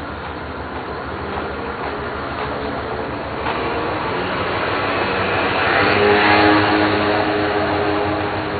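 Road traffic: a motor vehicle passing close by, its engine hum and tyre noise growing louder to a peak about six seconds in.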